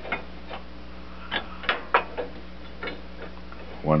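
Light metal clicks and taps, about seven at uneven spacing, from a removed steel tractor cam plate being handled and set against the frame and linkage. A steady low hum runs underneath.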